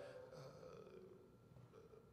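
Near silence: faint room tone, with the last of a man's voice fading out in the reverberation just as it begins.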